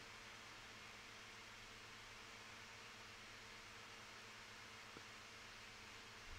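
Near silence: room tone with a faint steady hiss and hum, and one faint click about five seconds in.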